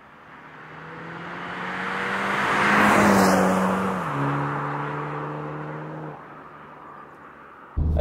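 A 2022 Mini John Cooper Works with its turbocharged 2.0-litre four-cylinder drives past: engine note and tyre noise build as it approaches, peak as it passes about three seconds in, then the engine note steps down in pitch about a second later and fades away. The exhaust note is subdued, with no pops or crackles.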